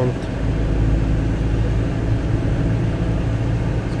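Steady low rumble of a car driving along a country road, engine and tyre noise heard from inside the cabin.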